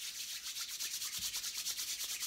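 Two palms rubbed briskly together, a steady dry swishing in quick, even back-and-forth strokes, made to imitate the wind at the start of a body-percussion rainstorm.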